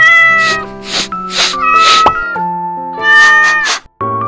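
A kitten meowing several times over gentle background piano music.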